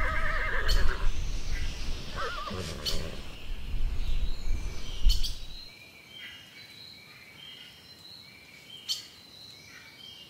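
Ponies whinnying: a wavering call at the start and another about two and a half seconds in, over low rumbling outdoor noise. The sound drops away about six seconds in, leaving only faint high chirps.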